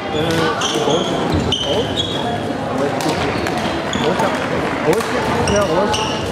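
Busy sports-hall din: many indistinct voices at once, with repeated short high squeaks of court shoes on the wooden floor and occasional sharp racket hits on the shuttlecock, all echoing in the hall.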